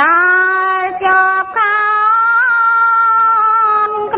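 A single voice chanting in long, held notes in the melodic style of a Khmer Buddhist sermon: it glides up into a first note held about a second, breaks briefly, then holds one long steady note for the rest of the time.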